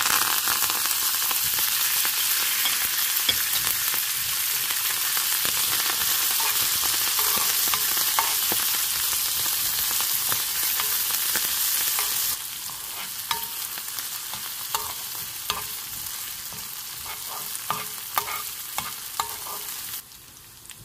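Fresh curry leaves, coriander and chillies dropped into hot ghee, sizzling loudly at once as the tempering for curd rice fries. About twelve seconds in, the sizzle drops to a quieter level, with short taps and scrapes as it is stirred in the pan.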